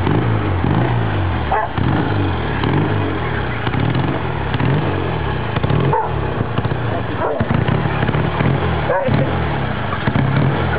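Triumph 500 Daytona's 490 cc parallel-twin engine running on one of its first tries after restoration, the revs rising and falling as the throttle is worked.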